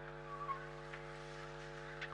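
Steady electrical mains hum on the broadcast audio, with a faint short sound about half a second in.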